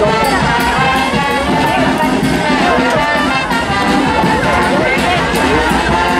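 Brass band music with trumpets and trombones playing steadily, with crowd voices underneath.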